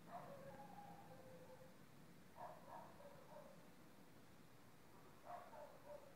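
Faint, distant dog barking in three short bouts over a quiet hiss.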